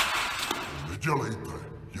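A single sharp bang of a hammer blow right at the start, followed by about a second of crashing, breaking noise, then a man's voice.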